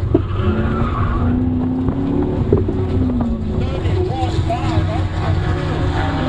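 Chevrolet Corvette heard from inside the cabin as it slows down: a steady low engine and road drone, with a faint tone rising in pitch in the first couple of seconds.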